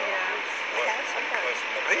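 Indistinct talking from several people at once over a steady background hiss.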